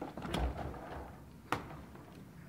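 Light handling rustle, then a single sharp click about one and a half seconds in.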